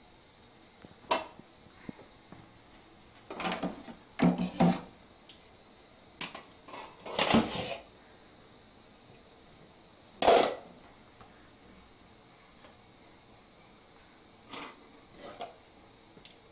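Stainless steel pans and glass pot lids knocking and clattering as a toddler takes them out of a kitchen drawer and sets them on a hard floor. The sounds come as scattered knocks and rattles with pauses between, the longest rattle just past the middle and one sharp clank a little later.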